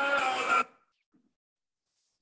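Group of voices chanting in a kirtan, with long held notes, that cuts off abruptly about half a second in, followed by near silence.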